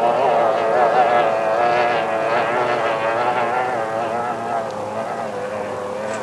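Racing outboard motors on speedboats running at high revs, several pitched whines wavering up and down together and gradually fading.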